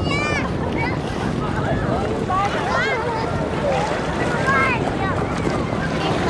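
Wind buffeting the microphone over the wash of shallow sea water, with children's high-pitched calls and laughter breaking in at intervals.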